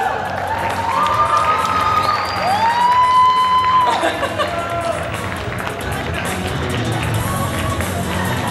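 Recorded skit soundtrack, music with voices, playing through the hall's speakers while an audience cheers. A long held note sounds from about two and a half to four seconds in.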